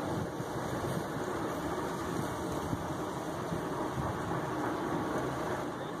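Steady low rumbling background noise with no distinct events.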